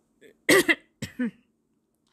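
A woman coughing into her hand, clearing her throat: one loud cough about half a second in, followed by two shorter ones.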